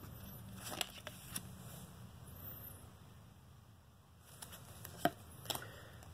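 Trading cards being handled and slid through the fingers: faint rustling with a few soft clicks about a second in and again near the end, over a low room hum.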